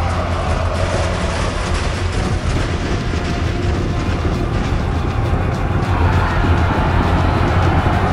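Loud film score over a dense, steady low rumble of massed noise, the din of an army of hoplites, swelling slightly near the end.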